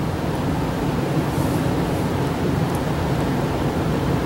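Steady rushing background noise with a low hum underneath, even throughout, with no speech.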